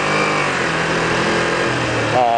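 Kawasaki Ninja 250 parallel-twin engine running under way through a turn, a steady engine note that shifts slightly in pitch, heard from a helmet camera under a rush of wind and road noise.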